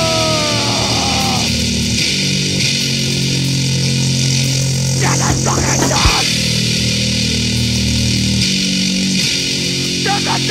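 Fast hardcore punk recording: distorted bass-heavy riffing held on long low notes, with a sliding sound that falls in pitch in the first second or so and a brief noisy break about five to six seconds in.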